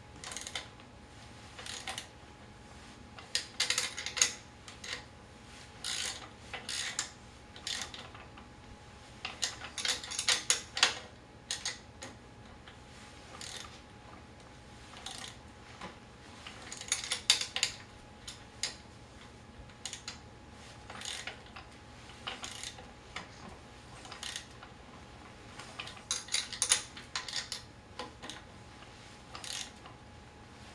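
Hand wrench clicking and metal clinking as the bolts clamping a manual wheelchair's brake to the frame tube are tightened, one and then the other. The clicks come in several short runs with pauses between and a few single clicks.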